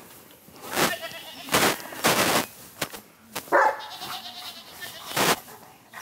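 Caucasian Shepherd Dog guard-barking on a chain: a string of single barks spaced about a second apart.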